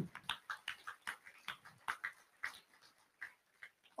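Faint, sparse handclapping from the audience: scattered single claps, a few a second, that thin out and stop.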